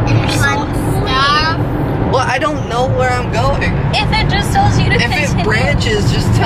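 Steady low road and engine rumble inside a moving car's cabin, with voices talking over it from about two seconds in.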